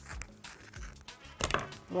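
Plastic cling film being handled and laid out on the work surface: a few light taps and clicks, with a brief crinkly rustle about a second and a half in.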